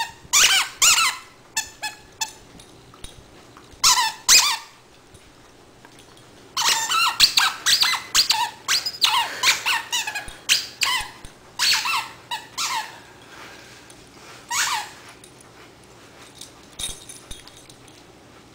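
Squeaker in a plush duck toy squeaking in irregular bursts as a dog chews on it: a few squeaks at first, a dense run of squeaks in the middle, then single squeaks further apart.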